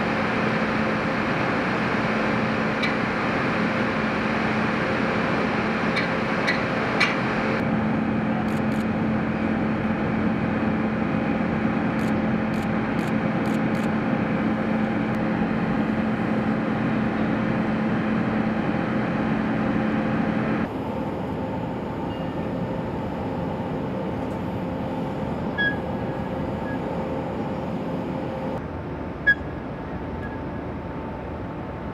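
Steady drone of heavy machinery with a low hum and a higher held tone, changing abruptly twice, with a few faint sharp ticks.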